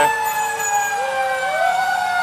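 Fire truck siren sounding a steady wail that slowly falls in pitch, with a second, lower tone rising to meet it about halfway through.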